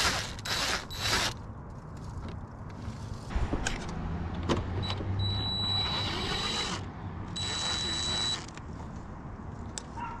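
DeWalt 20V cordless driver backing out the clamp bolts on a swamp cooler's blower motor mount: a short burst at the start, then two longer runs of the tool's motor whine in the second half.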